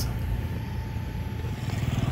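Low, steady rumble of a motor vehicle engine running, its fine pulsing growing a little stronger toward the end.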